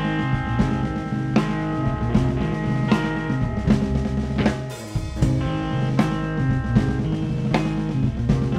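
Live rock band playing an instrumental passage: electric guitar and bass over a drum kit, with regular snare and bass drum hits.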